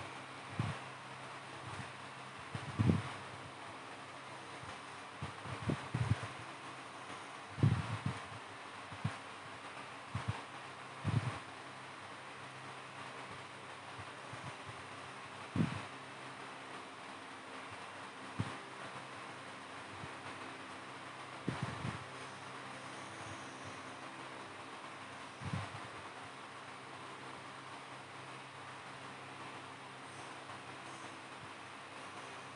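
Quiet room tone: a steady low hiss with a faint hum, broken by about a dozen brief, soft bumps at irregular intervals.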